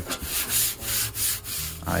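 Fingertip rubbing back and forth over the top cover of a Sony DTC-690 DAT recorder, a run of quick rubbing strokes about three a second. A voice starts just at the end.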